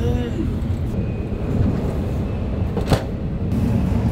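Steady low rumble of a Shinkansen bullet train running, heard from inside its lavatory compartment, with one sharp click about three seconds in.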